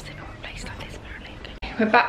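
A woman speaking softly, almost in a whisper. About a second and a half in, it cuts sharply to louder speech.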